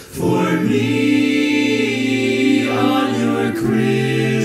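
Men's a cappella chorus singing in close harmony, holding full chords. The chorus comes in just after the start, shifts chord partway through and takes a short break before the next phrase.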